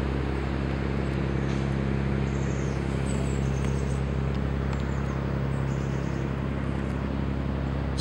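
Steady outdoor background of distant city traffic: a constant low hum under an even wash of noise, with a few faint high chirps around the middle.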